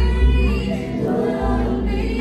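Live concert music over a PA: a woman singing into a microphone over an amplified backing track with long, heavy bass notes.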